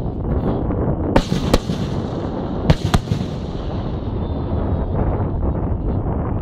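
Aerial fireworks bursting in the sky: four sharp bangs in two close pairs, the second pair about a second and a half after the first, over a steady low rumble.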